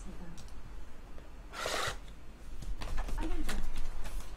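A cardboard trading-card box being handled on a table: a brief rustle about a second and a half in, then a run of light clicks and knocks near the end, with a few low, short gliding tones.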